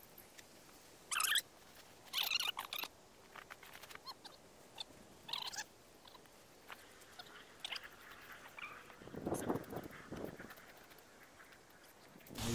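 Tent nylon rustling and being handled as a small tent is pitched, in several short bursts. The loudest come about a second in and again around two to three seconds in.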